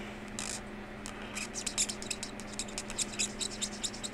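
Felt-tip marker squeaking and scratching on paper in rapid short strokes, several a second, as a star is coloured in; the strokes start about a second in.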